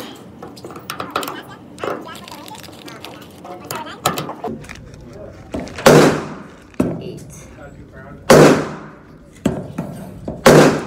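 Two loud pistol shots about two and a half seconds apart in the second half, each ringing off the hard walls of an indoor range, with softer shots and knocks between them. Before the shots, small clicks of cartridges being pressed one by one into a Glock 19 magazine.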